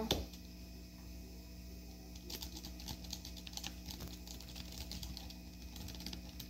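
Faint, irregular tapping on a laptop keyboard, starting about two seconds in, over a steady low hum.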